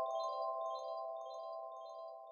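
The tail of a logo jingle: quick, high chime-like twinkling notes over a held chord, fading out.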